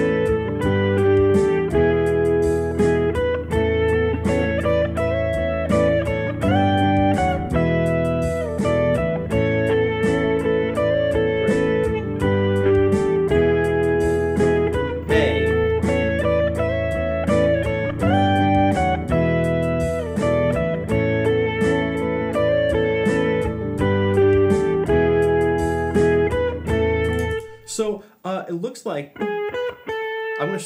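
Electric guitar playing a single-note harmony line over a looped backing track, following an A, G and E chord progression. The backing stops suddenly about 27 seconds in, leaving a few lone guitar notes.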